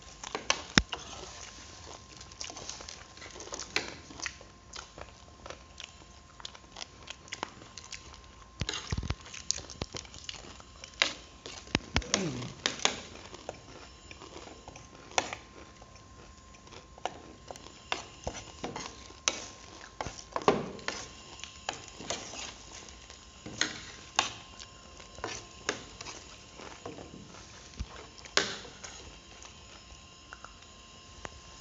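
Spoons and forks clicking and scraping on plates, with chewing, as two people eat grilled pork sekuwa; the sharp clinks come at an irregular pace.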